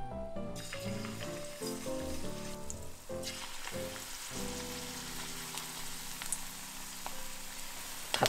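Spoonfuls of icefish (shirauo) fritter batter sizzling as they shallow-fry in 170 °C salad oil about 1 cm deep in a pan. The sizzle sets in about half a second in and grows louder about three seconds in. Background music plays under it.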